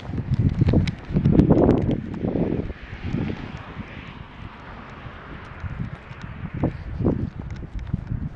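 Footsteps and clothing rubbing on a body-worn camera's microphone as the wearer walks, with loud low rumbling bursts in the first few seconds and scattered clicks.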